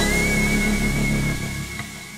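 Closing background music ending: the beat stops and a last held chord fades away, with one high steady note ringing on.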